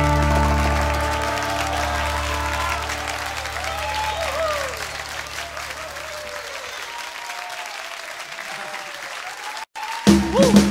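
Live concert audience applauding at the end of a song, with some voices shouting from the crowd, while the band's last held chord fades out under the clapping. The sound cuts to silence briefly near the end.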